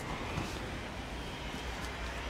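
Outdoor city background: a steady low rumble of traffic and street noise, with a couple of faint knocks.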